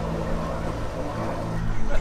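Gas pump nozzle dispensing fuel into a pickup truck's tank: a steady rushing hiss over a low mechanical hum.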